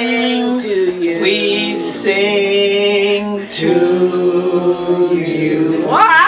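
A group singing a birthday song without accompaniment, several voices holding long drawn-out notes together, stepping to new pitches about a second in and again past the halfway point.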